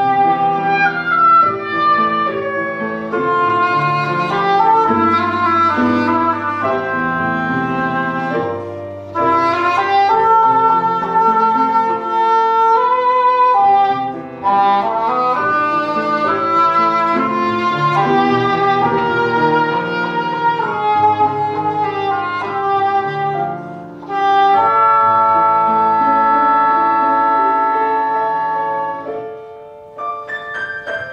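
Two oboes and an English horn playing sustained, overlapping melodic lines over piano accompaniment. The phrases break off briefly three times and come back in strongly, and the winds fade near the end.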